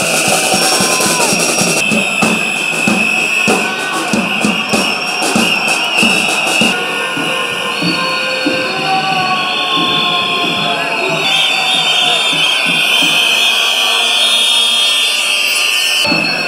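Noise of a protest crowd: many voices with a hand-held drum beating a rhythm for the first several seconds. Steady high-pitched tones sound over the crowd throughout.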